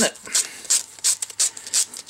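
A strip of sandpaper rubbed back and forth around a 3D-printed PLA plastic part, a quick, uneven run of short scratchy strokes, several a second.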